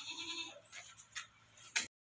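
A goat's quavering bleat trailing off at the start, followed by a short faint lower call and a couple of light clicks; the sound cuts off abruptly just before the end.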